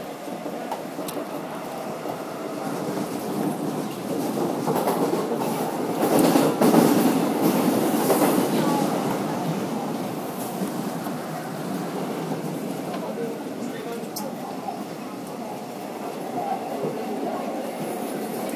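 Seoul Metro 4000-series subway train running through a tunnel, heard from inside the car: a steady rumble of running noise that swells about six to nine seconds in, with a few sharp clicks from the track.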